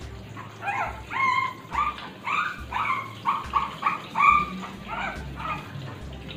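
A two-month-old Shih Tzu puppy crying out during its bath: a run of short, high-pitched cries, a little over two a second, starting just under a second in. The loudest comes about four seconds in.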